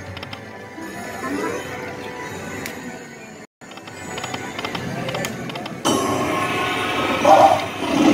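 Electronic sounds of an Aristocrat Dragon's Riches Lightning Link video slot running a spin: reel-spin music and chimes over casino background noise. The sound cuts out for an instant about halfway through, and the machine's music gets louder near the end as the reels stop.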